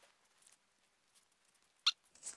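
Faint soft rubbing, then one short high squeak near the end as a scrub sponge is pressed against the paste-covered metal pot.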